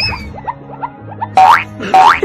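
Playful background music with cartoon boing sound effects: a rising sweep at the start, a quick run of short rising blips, then two loud rising sweeps near the end.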